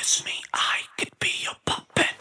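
A whispered vocal phrase in a bare break of a rock song, with no drums or bass under it, chopped into short pieces by several brief drop-outs to silence.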